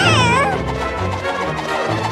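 A cartoon creature's short cry that wavers, dipping and rising in pitch, in the first half-second, over a playful cartoon music score that carries on through.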